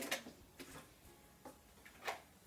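A felt-tip marker writing on chart paper: a few faint, short scratchy strokes.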